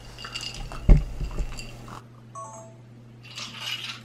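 Drinks being downed from small glasses with ice: slurping and swallowing sounds, with a single thump about a second in and a brief faint squeak midway.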